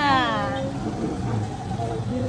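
A woman's drawn-out exclamation falling in pitch, followed by quieter voices, over a steady low hum.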